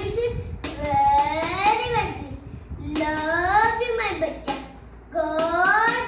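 A young girl's voice in long, drawn-out sing-song phrases, three of them with short breaks between, with a few sharp taps in between.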